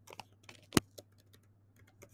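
Typing on a computer keyboard: a few separate keystrokes in the first second, one louder than the rest, then a pause.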